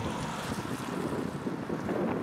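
Police helicopter flying overhead, its rotors making a steady rushing noise, with wind buffeting the microphone.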